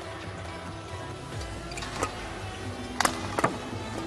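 Background music under a badminton rally, with sharp racket hits on the shuttlecock: one about two seconds in, then two louder ones close together about three seconds in.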